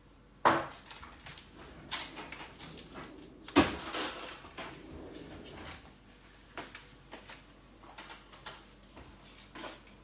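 Scattered clicks and knocks of kitchen utensils and small containers being handled on a countertop, the loudest pair about three and a half and four seconds in.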